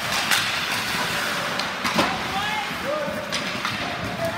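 Ice hockey rink game sound: a steady hiss of play on the ice, with indistinct shouted voices and a few sharp knocks of sticks and puck, the loudest about two seconds in.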